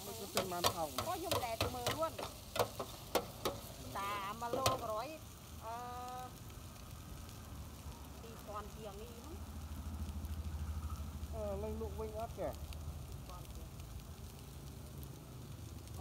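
Noodles stir-frying in a hot pan: a metal utensil clatters and scrapes against the pan in quick, sharp clicks for the first five seconds over the sizzle, then the sizzle goes on more steadily.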